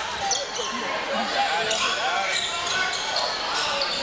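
Basketball being dribbled on a hardwood gym floor, amid a steady hum of spectator chatter echoing in a large gym.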